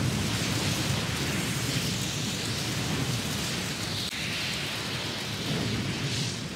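Anime sound effect of a huge blast of fire: a steady rushing noise with a low rumble, unbroken throughout.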